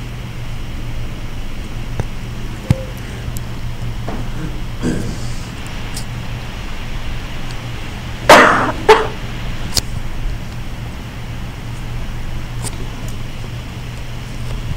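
Steady low electrical hum of room noise with a few faint clicks. About eight seconds in, two short loud sounds come half a second apart.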